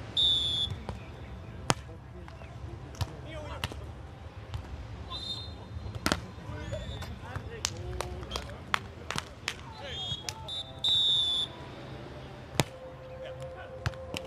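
A beach volleyball rally: the referee's whistle blows briefly for the serve, then sharp hits of the ball on players' hands and arms, with players' calls in between. A second short whistle about eleven seconds in ends the point.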